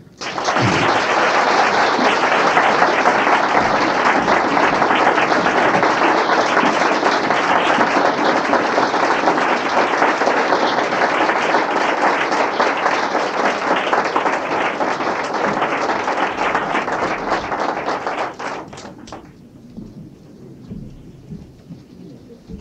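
Audience applauding, steady for about eighteen seconds and then dying away, leaving quiet room noise with a few faint knocks.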